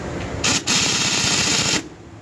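Pneumatic impact wrench on a car wheel's lug nut: a short blip about half a second in, then a rapid hammering run of about a second that cuts off suddenly.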